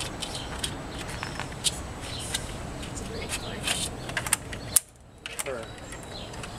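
Indistinct background voices with scattered sharp clicks and knocks, the loudest click just before the end; the sound cuts out suddenly for about half a second right after it.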